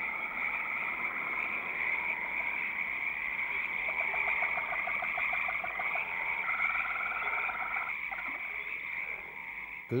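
A night-time frog chorus: frogs croaking in rapid, evenly spaced pulse trains, several overlapping near the middle, over a steady high-pitched chirring.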